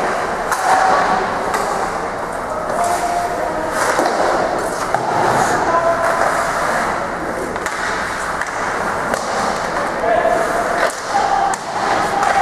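Ice hockey play: skates scraping the ice and sticks and puck knocking, with players' voices calling out over a steady din.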